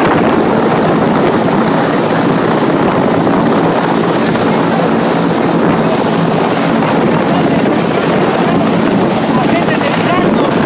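A loud, steady engine drone with voices under it.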